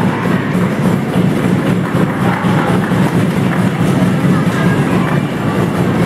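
Loud, continuous din of a wrestling crowd in a hall, with music underneath.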